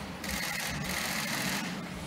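Steady low background hush of a large chamber picked up by open desk microphones, with no speech.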